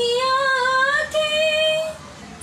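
A young woman singing unaccompanied, holding one long note that rises slightly and then a second, higher note held for almost a second.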